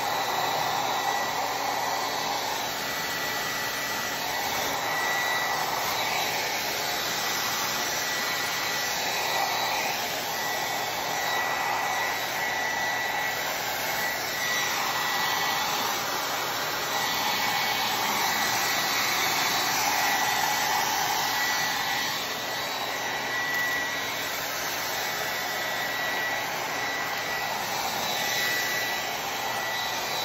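Handheld hair dryer running steadily, blowing on a cellophane shrink-wrap bag to shrink it, with a steady high whine. The rush of air swells and fades every few seconds as the dryer is moved about.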